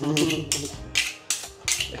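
Kitchen knife cutting raw meat on a cutting board: a series of short knocks of the blade against the board, about half a dozen, a few tenths of a second apart.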